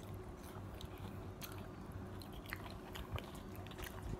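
Faint chewing of breaded fried cheese sticks, crispy outside and soft inside, with scattered small crunchy clicks over a low steady hum.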